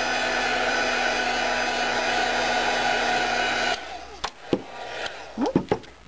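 Craft heat gun blowing hot air at a steady pitch to dry alcohol-marker ink on a tile. It cuts off suddenly a little under four seconds in, followed by a couple of light knocks.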